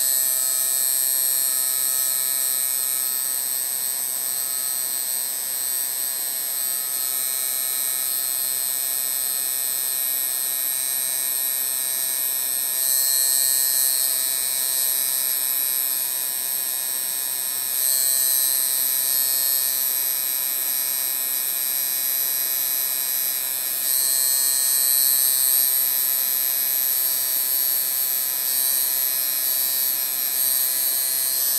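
Electric tattoo machine buzzing steadily while tattooing skin. Its high-pitched buzz gets louder a few times along the way.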